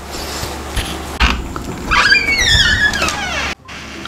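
A dog whining in a run of high, falling cries for about a second and a half, cut off suddenly, after a couple of knocks and rustling.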